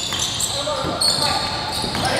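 Basketball game in a gym: voices of players and spectators carry in the hall's echo, with short high sneaker squeaks on the hardwood floor and a basketball bouncing.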